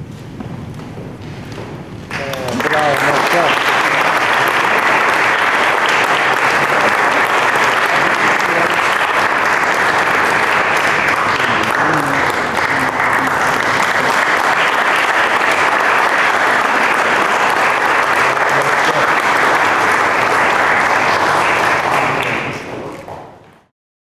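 Audience applauding, starting about two seconds in and holding steady, then fading out near the end.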